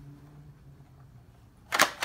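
Toy foam dart blaster's plastic mechanism giving a loud, sharp clack near the end, followed by a second clack a quarter of a second later.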